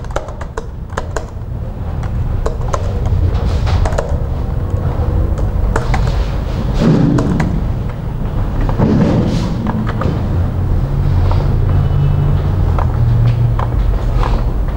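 Scattered computer keyboard and mouse clicks over a steady low room hum.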